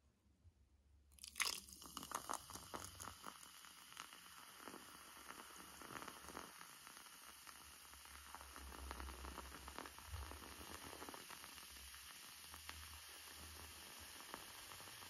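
A dark carbonated soft drink poured over ice cubes in a glass, fizzing with a steady faint hiss and lots of small crackles from the ice. It starts suddenly about a second and a half in.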